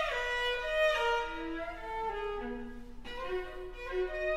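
Viola playing a slow line of held notes: a note slides down at the start, the following notes step lower, and the line rises again about three seconds in.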